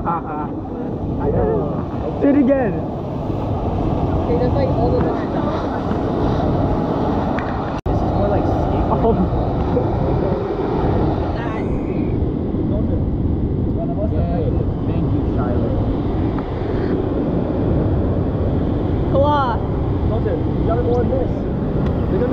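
Indistinct voices over a loud, steady low rumbling noise, broken by a sudden cut about eight seconds in.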